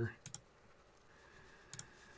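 Computer mouse clicks: a quick double click shortly after the start and another pair near the end, with a faint steady high tone under the last second.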